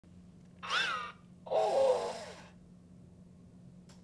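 WALL-E U-Command toy robot playing two short voice sounds from its speaker: a high chirp that rises and falls, then a longer, breathy call. A steady low hum runs under both.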